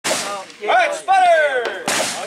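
Gunshots, one sharp crack right at the start and another near the end, with a man's voice calling out in a long falling drawl between them.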